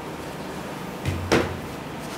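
A dull thump and then one sharp knock about a second and a quarter in, as something is knocked or set down against a hard surface.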